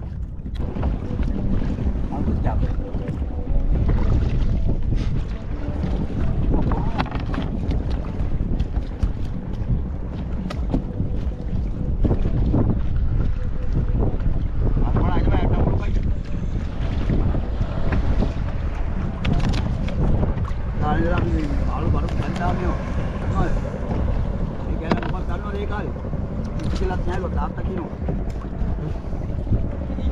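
Wind buffeting the microphone in a steady low rumble, over choppy sea water washing around a small open boat.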